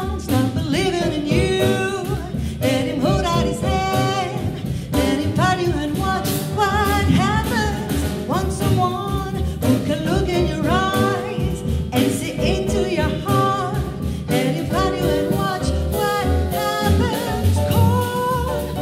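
Live jazz: a woman singing into a microphone, accompanied by piano, double bass and drum kit.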